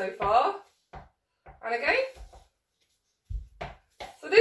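Brief unclear talk, then near the end a low thud and a sharp tap: a small ball bouncing on a wooden floor and a ruler striking it.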